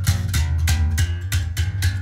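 Five-string electric bass played through an amp: a quick run of plucked notes, about six or seven a second, with a deep, strong low end.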